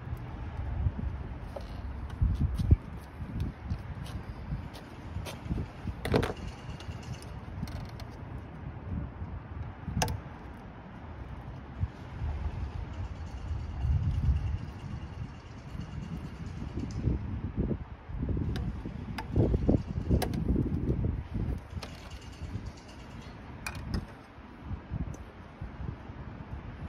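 Hands working among hoses and connectors in a car's engine bay as the lines are disconnected: irregular rustling, scraping and bumping, with a few sharp clicks, the clearest about six and ten seconds in.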